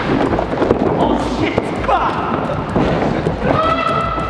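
Players' running footsteps and thuds on a padded gym floor and foam boxes, mixed with wordless shouts. A long held shout comes near the end.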